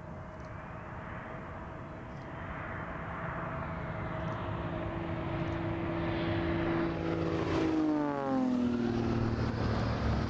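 An aircraft flying low past the runway. A steady whine and hum build in loudness, then drop in pitch as it goes by about eight seconds in.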